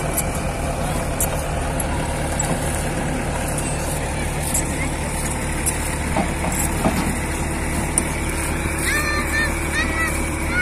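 Diesel engines running steadily at an even low pitch, from a crawler excavator and a farm tractor pulling a trolley. A few short high-pitched calls come in near the end.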